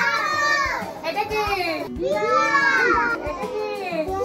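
A group of young children's voices chanting together in short sing-song phrases, with a brief break about halfway, reciting the names of animals on a picture chart.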